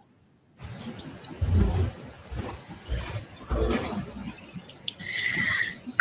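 Room noise from a chamber picked up by an open microphone. It cuts in about half a second in, with dull low thumps and rustling and a short hiss near the end.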